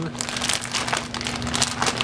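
A resealable plastic bag crinkling and rustling as it is opened by hand: a dense, irregular run of small crackles.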